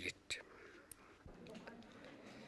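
Faint background hiss in a pause between spoken phrases, with a short bit of speech just after the start and a single faint click about a second in.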